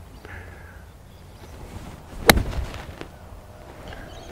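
Eight iron striking a golf ball off a low tee: a single sharp crack of the club hitting the ball, a little over two seconds in.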